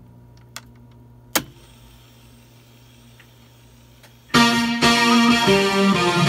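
Akai 1721W reel-to-reel tape deck: a sharp click of its transport control about a second and a half in, then faint tape hiss over a steady low hum, then recorded music with guitar starting loudly from the deck's playback about four seconds in.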